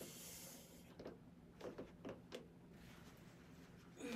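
Near silence with a woman's faint, effortful breathing: a soft hissing exhale at the start, then a few short, quiet sounds of breath or hammock fabric.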